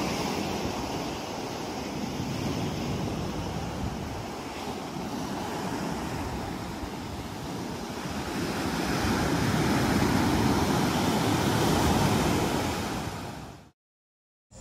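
Ocean surf breaking and washing up the shore, a steady rushing that swells loudest in the second half and fades out just before the end.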